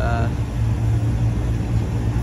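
A steady low mechanical hum runs without change under the end of a spoken word at the start.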